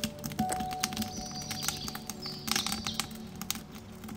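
Wood fire crackling in a clay tandoor under a heating wok, with sharp irregular pops throughout. Birds chirp briefly about a second in and again just past the middle, over soft background music.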